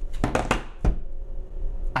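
A few short clicks and knocks on a tabletop in the first second, ending in a single low thump, over a steady low electrical hum.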